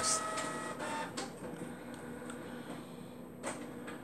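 Canon MX490 inkjet printer running: a steady mechanical whir with a few sharp clicks.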